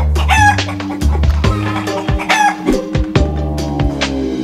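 A chicken calling twice, about two seconds apart, over background music with a steady bass.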